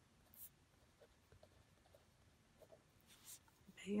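Faint scratching of a fine-tipped pen drawing on a paper Zentangle tile: a brief stroke about half a second in and a longer stroke about three seconds in.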